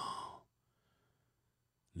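The end of a man's long, deep, drawn-out vocal tone, falling in pitch and trailing off like a sigh within the first half second, followed by near silence.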